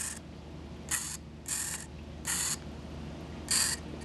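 Four short, raspy mechanical noises spread over a few seconds as the radio-control gear of a micro helicopter is worked by hand.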